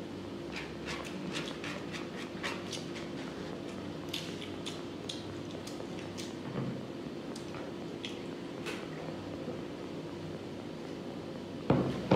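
Close-miked eating sounds: chewing with many short, sharp wet mouth clicks, while fingers mix rice on a plastic tray, over a steady low hum. A loud knock comes near the end.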